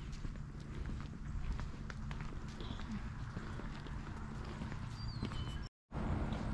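Footsteps on a wet paved walkway over a steady wind rumble on the microphone, with a few short bird chirps, most clearly near the end. The sound cuts out suddenly just before the end.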